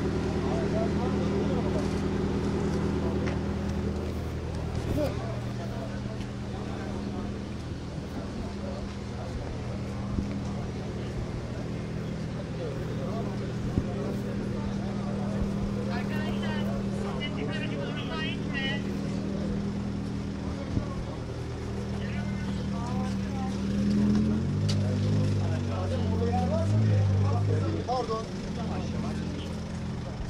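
A car's engine idling with a steady low hum under indistinct voices of people talking nearby. Near the end the engine note shifts and grows louder for a few seconds.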